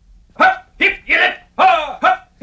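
A dog barking: about four short, sharp barks in quick succession, each dropping in pitch.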